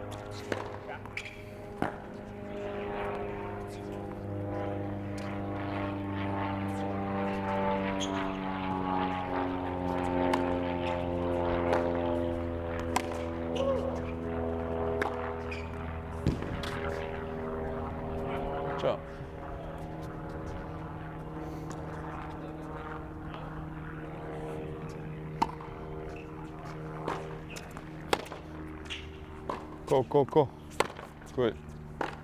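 A propeller aircraft drones overhead, building to its loudest about a third of the way in and slowly shifting in pitch as it passes. Tennis balls pop off racquet strings every so often, with a few sharper hits near the end.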